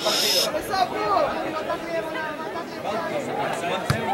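Spectators' chatter, several voices talking over one another, with a short hiss in the first half second. Just before the end comes a single sharp thump: a boot kicking the rugby ball.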